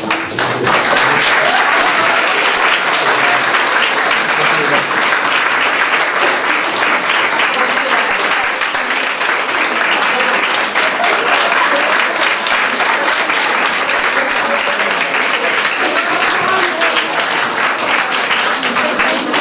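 A roomful of people applauding steadily, many hands clapping at once.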